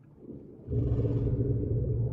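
A deep, steady rumbling drone from the soundtrack comes in about two-thirds of a second in, after a quiet start, and holds low sustained tones.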